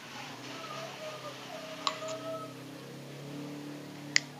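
Faint, distant voices with a single sharp click about halfway through.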